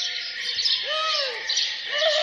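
A flock of birds chirping busily, with a couple of lower, arching calls through it.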